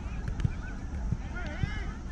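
Distant high-pitched shouts and calls of children playing football, short and rising and falling, the clearest about a second and a half in, over a low rumble of wind on the microphone.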